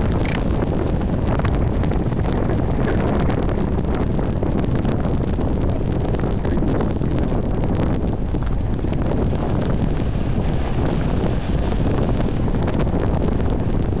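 Wind blowing hard across the microphone: a loud, steady rumble that covers everything else.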